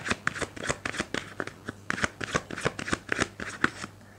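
A tarot deck being shuffled by hand: a quick run of crisp card snaps, about six a second, that stops just before the end.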